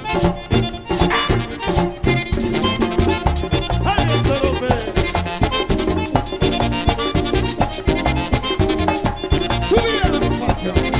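Live merengue típico band playing an instrumental passage led by a button accordion, with its melody running over bass and a fast, steady percussion rhythm.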